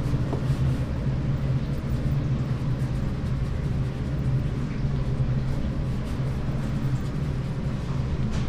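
A steady low mechanical hum with an even rumble underneath, unchanging throughout, such as a kitchen machine or ventilation fan running.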